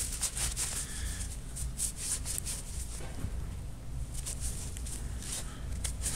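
Cloth shop rag rubbing and wiping a grimy black steel part: an irregular scratchy rustle with many small quick scrapes.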